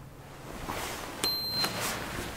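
Elevator hall call button pressed: a click, then a single short, high electronic beep acknowledging the call, followed by a couple of clicks.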